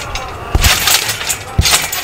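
A person landing on a backyard spring trampoline: the mat thumps twice, about half a second in and again near the end, with the steel springs rattling at each landing.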